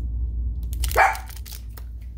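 A dog barks once, a short sharp bark about a second in: an alert bark at someone walking into the house.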